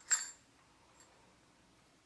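A small metal jingle bell jingles briefly once as the rope through it is pulled, then gives a faint tinkle about a second later.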